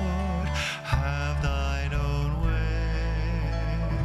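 A slow hymn played by a small acoustic band on acoustic guitars and banjo, with sustained chords over a steady bass.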